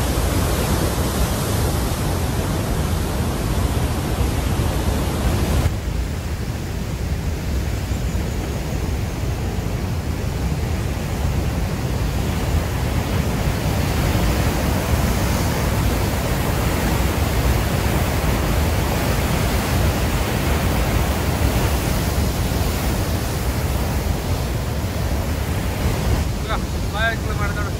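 Huka Falls: the Waikato River pouring through its narrow rock chute, a loud, steady rushing of white water. About six seconds in the sound turns duller as the highest hiss drops away.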